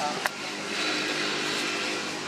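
A baby long-tailed macaque gives a short burst of high squeaky calls right at the start, followed by a single sharp click, over a steady background hiss.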